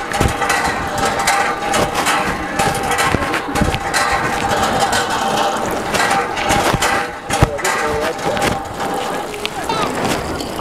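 Lever-handled hand water pump being worked up and down, with scattered mechanical knocks over a bed of indistinct voices.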